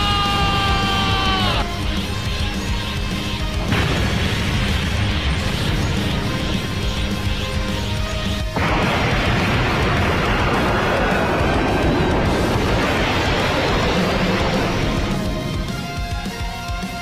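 Animated explosion sound effects over dramatic background music: a held high note cuts off in the first two seconds, a rush of blast noise comes in about four seconds in, and a larger, brighter blast about halfway through, as a planet is destroyed.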